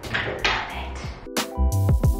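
Background music with a steady beat; sustained keyboard-like chords come in about two-thirds of the way through.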